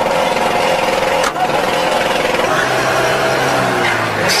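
Engine and road noise heard inside the cab of a moving UAZ off-road vehicle: a loud, steady, rough drone with a single knock about a second in.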